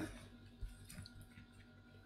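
Faint handling sounds of wool yarn being drawn through fabric stretched in a wooden embroidery hoop: a soft rustle with a couple of small ticks about half a second and one second in.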